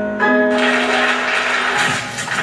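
Piano music played back through a television set and re-recorded off its speaker. A new sustained chord sounds about a fifth of a second in, then a dense, noisy wash of sound swells over it.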